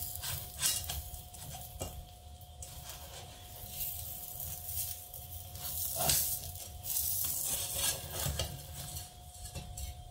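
A plastic slotted spatula, then a knife, scraping and scratching around the edge of a non-stick frying pan to loosen a loaf of skillet bread, in irregular strokes with the loudest about six seconds in. A faint sizzle runs underneath.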